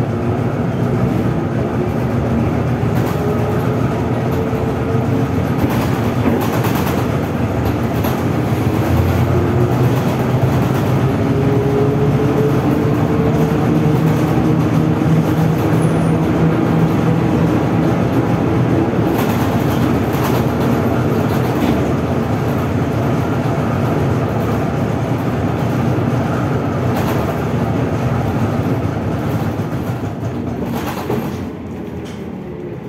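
Interior of a ZiU-682G trolleybus under way: the electric traction motor whines, its pitch rising as the bus picks up speed through the first half, over steady road and body rumble with a few knocks from bumps.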